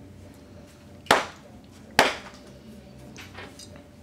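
Two sharp clicks about a second apart as a man swallows a pound coin, the fourth in a row.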